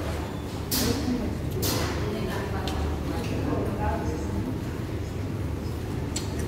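Restaurant background of indistinct voices over a steady low hum, with two sharp clatters of cutlery against a plate about one and two seconds in.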